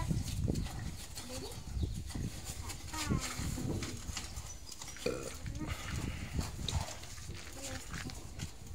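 Trowels scraping and tapping wet cement plaster onto a brick wall, making scattered short clicks and scrapes. A few short animal calls sound in the background, about three seconds in and again about five seconds in.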